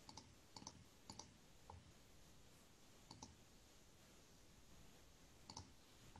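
Near silence: quiet room tone with a few faint, scattered clicks, several in the first two seconds and another near the end.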